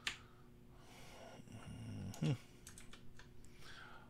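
Scattered clicks of a computer keyboard and mouse: one sharp click at the start and a small cluster of light clicks nearly three seconds in.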